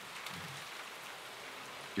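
Steady low hiss of quiet room tone between lines of dialogue, with a faint short voice sound about half a second in.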